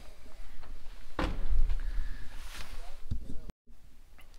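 Wooden-framed window being handled: a sharp knock about a second in, followed by a brief low rumble, and a softer thump near the end.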